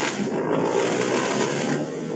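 Steady, dense background noise picked up by a participant's unmuted microphone in an online video call. It comes through the call's compressed audio as an unwanted noise that drowns out the meeting.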